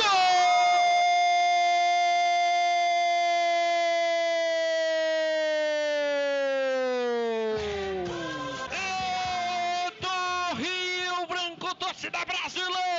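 A radio football commentator's drawn-out "gooool" cry, held on one note for about seven and a half seconds with its pitch sagging toward the end. Short shouted phrases follow.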